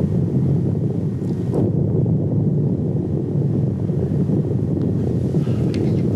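Steady low rushing noise of wind buffeting an outdoor camera's microphone, unbroken throughout.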